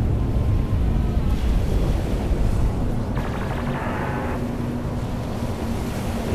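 Ocean and wind sound effects: a steady low rumble and wash of sea, with a low held drone joining about two seconds in and a brief higher shimmer of tones about three seconds in.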